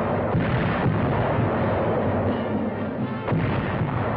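Heavy naval gunfire from a battleship's big guns: a dense, continuous din of firing, with sharper reports about a third of a second in and again a little after three seconds.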